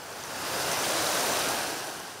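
Rushing river water, a steady wash that swells to a peak about a second in and then fades.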